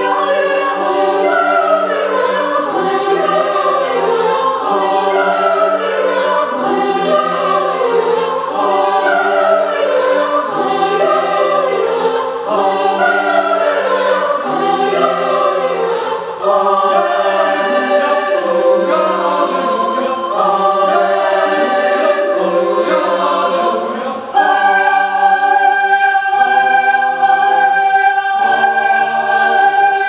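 Mixed choir singing in several parts. About three-quarters of the way through, a high note is held steady while the lower voices keep moving beneath it.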